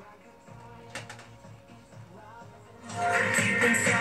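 Pop song playing from a Honstek K9 waterproof Bluetooth speaker held under water: the music is faint and muffled, then comes back loud and clear about three seconds in as the speaker is lifted out of the water.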